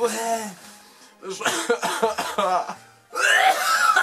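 A man coughing and gagging on a disgusting smoothie, with a loud, harsh retching burst near the end, over background music.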